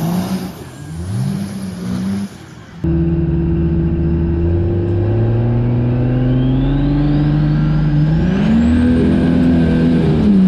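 A diesel pickup truck revs and launches down a dirt drag strip. After a cut about three seconds in, it is heard from inside the cab: a Cummins turbo-diesel pulling hard under full throttle, its engine note climbing while a turbo whine rises steadily in pitch, going higher still near the end.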